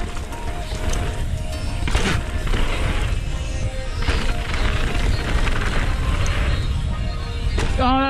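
Wind rush and tyre-on-dirt rumble picked up by a camera on a mountain bike descending a dirt jump trail, with a sharp knock about two seconds in. Music plays underneath.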